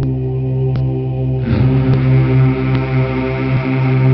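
Devotional Islamic chant opening with a steady, droning hum of held notes. A fuller, brighter layer of sound joins about one and a half seconds in, with no words yet; a sung salawat on the Prophet follows later in the recording.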